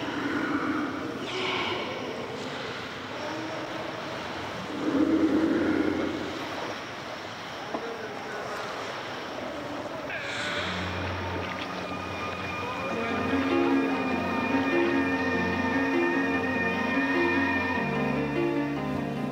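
Water washing around in a sea cave, with a few deep wailing sea lion calls in the first half, the loudest about five seconds in. From about ten seconds in, background music with a repeating pattern of notes comes in and grows louder.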